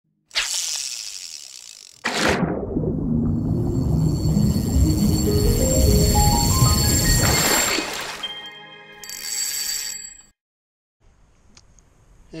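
Channel intro music with sound effects: a sharp opening hit that fades, then a second hit about two seconds in leading into a climbing run of notes over heavy bass. The music stops about ten seconds in.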